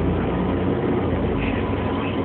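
City bus engine and road noise heard from inside the passenger cabin: a steady low rumble while the bus is under way.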